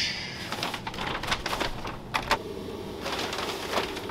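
Clicks and knocks of a door and footsteps as someone comes into a small room. About halfway through, a steady air-conditioning hum sets in.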